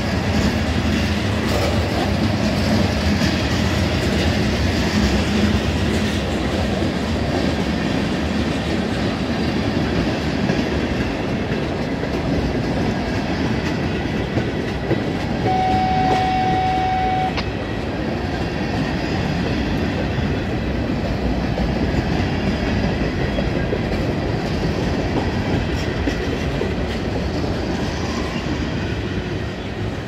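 A mixed freight train of covered hoppers, gondolas and boxcars rolling past close by: a steady, loud rumble of steel wheels on rail. About halfway through there is a brief, high, steady tone lasting about two seconds.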